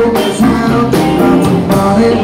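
Live rock band playing at full volume: keyboard, electric guitar and drum kit together, with steady drum hits under sustained chords.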